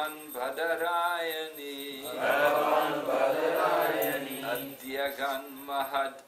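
Sanskrit verse chanted in long, melodic phrases into a microphone, devotional mantra recitation, with a steady low tone held beneath that stops near the end.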